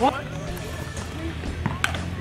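A single sharp crack near the end, a bat hitting the ball, over a steady low hum and a brief voice at the start.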